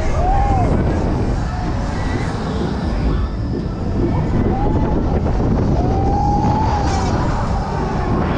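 Fairground noise: a loud, steady rumble with a few drawn-out tones that rise and then fall, near the start, about five seconds in, and again around six to seven seconds.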